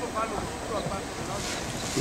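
Steamboat Geyser venting steam and churning water in a minor eruption: a steady rushing hiss that grows brighter near the end.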